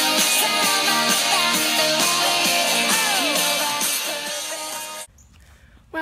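Background music with guitar that cuts off abruptly about five seconds in, leaving only faint background noise.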